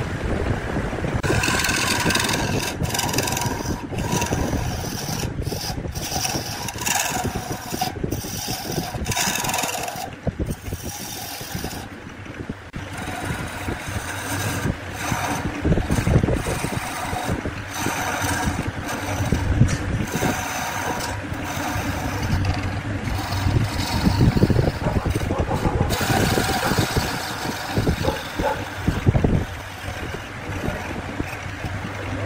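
Wood lathe running with a steady low hum while a lathe tool scrapes into the spinning wooden vase at its foot, in uneven rasping cuts that come and go.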